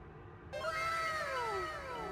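A cat meowing once: one long meow that rises briefly and then slowly falls in pitch.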